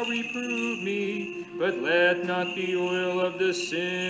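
Orthodox liturgical chant, sung voices holding and sliding between long notes. The small bells on a swinging censer jingle briefly near the end.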